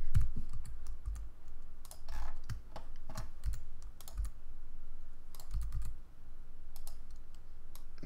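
Computer keyboard keys pressed in short irregular clicks while a 3D model is edited in Blender, including a Shift+S shortcut.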